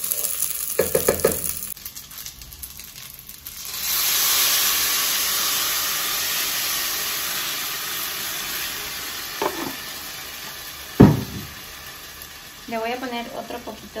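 A wooden spoon stirring dry rice browning in a pot, then a loud sizzle that starts about four seconds in as blended tomato is poured onto the hot rice and oil, fading slowly over several seconds. A sharp knock about eleven seconds in is the loudest moment.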